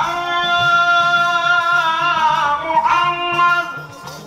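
Male solo voice singing a Maulid devotional chant into a microphone: one long held, ornamented note, then a shorter phrase near the end, over a low rhythmic backing.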